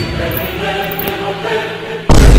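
A male voice chanting in a steady, drawn-out drone, like a mantra being recited.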